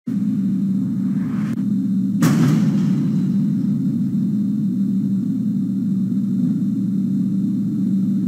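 Unexplained boom heard across the region, picked up indoors by a home camera's microphone: a faint crack about a second in, then a sharper, louder boom just after two seconds, over a steady low rumble.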